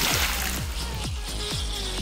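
Background music with a steady, low beat that repeats about twice a second, and a rushing swish sound effect fading out over the first half second.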